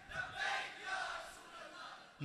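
A crowd of listeners calling out together, faint and distant, swelling twice.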